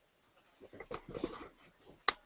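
A faint, indistinct voice away from the microphone, starting about half a second in and fading before the end.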